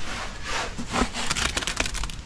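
Rough, gritty scraping strokes, several in quick succession, from wet concrete and broken hollow block being worked into a post footing.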